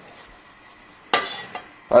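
A single metallic clink of a stainless steel frying pan being shifted on a gas stove's grate, about a second in, with a brief ring after it.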